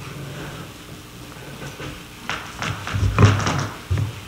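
A pause in a quiet room with a low hum, a few faint clicks, and a brief soft thump with a rustle about three seconds in.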